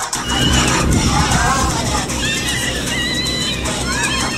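A steady low rumble with high-pitched voices calling out over it, strongest in the second half.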